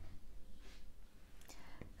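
Faint scratching of a marker pen writing on a whiteboard, with a few light taps about a second and a half in.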